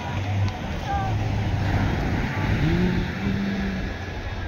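Beach ambience: a low steady rumble with scattered voices of people around.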